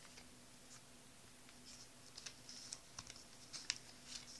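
Pages of a small notebook being turned by hand: faint paper rustles and a few soft ticks.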